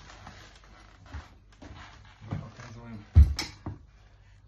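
A 7.5 kg grip-training implement, a bar on a weighted base, set down on a floor with one heavy thump and a short clatter about three seconds in.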